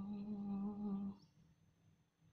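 A woman humming one steady, level note, which stops a little over a second in.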